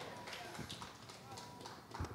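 Faint footsteps and handling knocks picked up through a handheld microphone as its holder moves across a stage, about three soft clicks a second.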